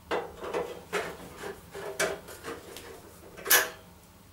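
Light metallic clicks and knocks, roughly one every half second, as small bolts are undone and handled against the sheet-metal casing of a Junkers Euroline gas boiler; the loudest knock comes near the end.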